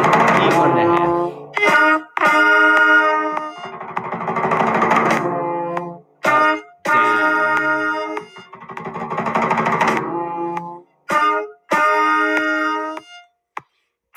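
Band play-along recording of the final bars of a beginner piece. Three times, a swelling bass drum roll leads into a short loud accented note and a longer one. A brief final note comes near the end.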